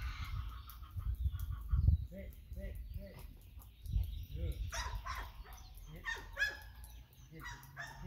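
Dogs barking at a distance in short repeated calls, over a low gusty rumble of wind on the microphone.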